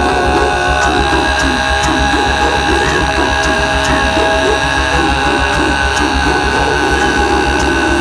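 Music with sustained, droning tones over a fast-pulsing low bass.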